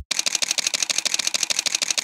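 Single-lens reflex camera shutter firing in a rapid continuous burst, a fast even run of sharp clicks many times a second.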